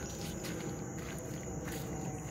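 Insects trilling in one steady high tone in the background, with faint footsteps through wet grass about twice a second.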